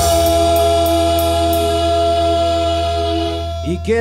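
Live guaracha band music: a long held chord over a steady low drone, with a few light cymbal ticks in the first second and a half. A man's voice comes in over it near the end.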